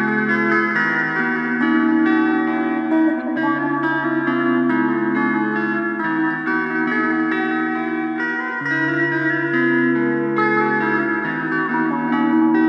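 Rock-blues guitar instrumental with echo effects, over held bass notes that change about every two and a half to three seconds.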